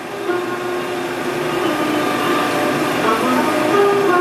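Soundtrack music from an old promotional film: sustained chords of several held notes that change pitch a few times, over the film's steady hiss.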